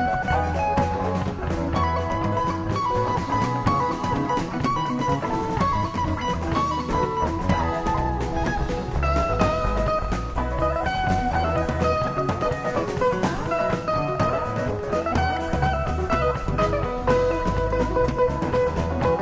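Live rock band playing an instrumental passage: an electric guitar plays a melodic lead line over bass and drum kit.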